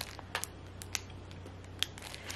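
A few faint, sharp clicks and ticks of plastic-wrapped baby wipe packs being handled, over a faint low steady hum.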